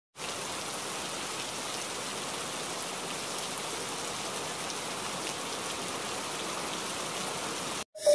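Rain falling steadily on hard wet surfaces, an even hiss that cuts off abruptly just before the end.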